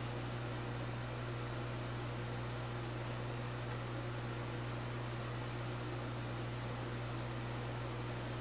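Steady room tone: a low, even hum with a hiss over it, like a fan or electrical hum running. Two faint, tiny ticks come a little after two seconds and about three and a half seconds in.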